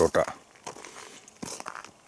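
A man's brief vocal sound right at the start. It is followed by faint, scattered crackling and rustling.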